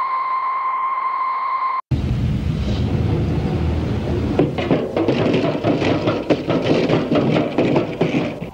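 A steady electronic test tone, the kind laid on old videotape between segments, holds for about two seconds and then cuts off abruptly. It gives way to a loud, rough, noisy soundtrack with many knocks and clatters.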